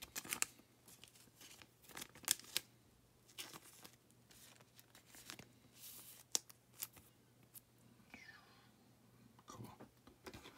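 Trading cards being handled by hand: scattered light clicks, slides and rustles of card stock, with a few sharper snaps about two seconds in and again past six seconds.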